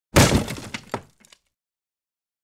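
A crash sound effect: one loud smash with a few smaller hits and clinks trailing off, gone within about a second and a half.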